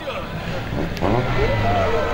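Rally car engine running as it passes, then, about a second in, people talking over a low engine rumble.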